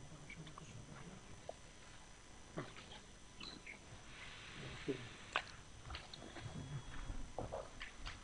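Faint room tone of a quiet meeting room with a few scattered soft clicks and a brief rustle about halfway through: small handling noises at the desks during a vote.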